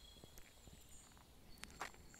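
Near silence: faint forest background with a few soft clicks, one a little louder just before the end.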